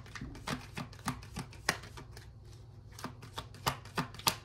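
A deck of tarot cards being shuffled by hand: a run of short, sharp card slaps, irregular, about four a second.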